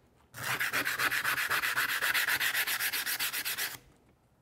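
Sandpaper rubbed hard back and forth across a laminate flooring sample in rapid, even strokes for about three and a half seconds. It is a scratch test of the laminate's wear layer.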